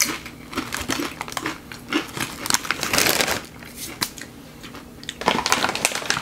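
Crunching of a Doritos tortilla chip being bitten and chewed: a run of irregular crackles and clicks, with a denser, louder burst about halfway through.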